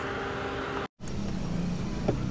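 Steady outdoor background with a faint hum, then an abrupt cut about a second in to the low, steady rumble of a car's engine and tyres heard from inside the moving car's cabin.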